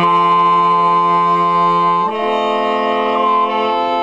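A saxophone quartet, with a baritone saxophone on the bottom line, playing long held chords. The four voices come in together at the start after a brief break, and the chord changes about halfway through.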